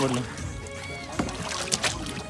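Water lapping and sloshing against the hull of a small wooden fishing boat, with a few sharp knocks near the end, under background music with a sung voice.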